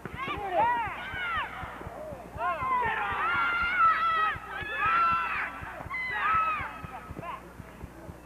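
High-pitched voices shouting and calling out, with long drawn-out shouts in the middle.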